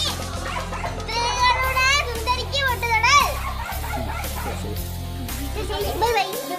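Children's excited, high-pitched voices calling out over background music with a steady bass line.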